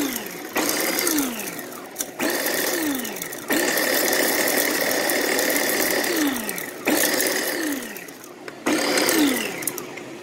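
Small electric food chopper pulsed about half a dozen times, grinding dried catnip leaves and stems. The motor whirs up sharply at each press and its pitch falls as it coasts down, with one longer run of about three seconds near the middle.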